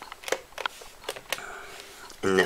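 Handling noise from two plastic handheld EMF meters being moved by hand: about five light clicks and taps in the first second and a half, then a quieter stretch.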